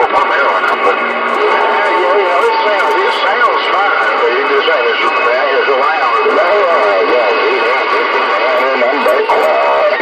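CB radio receiving garbled, unintelligible voice transmissions through its speaker, with steady tones running underneath.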